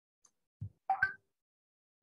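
Short pops and clicks over a video-call line: a low thump a little over half a second in, then two quick sharp pops with a faint tone about a second in, otherwise near silence.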